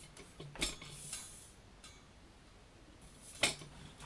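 A few sharp clicks and knocks of objects being handled: one about half a second in, a lighter one about a second in, and the loudest near the end.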